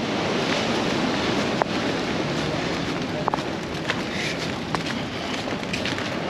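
Rain starting to fall, a steady hiss with a few sharp drop taps close by.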